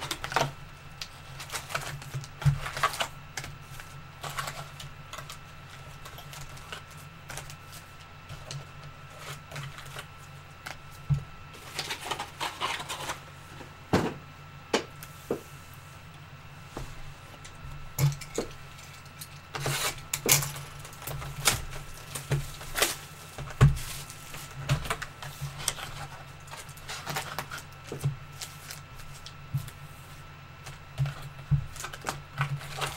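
Trading-card boxes and plastic-wrapped packs being handled and opened: irregular clicks, taps and crinkles of cardboard and foil, over a steady low hum.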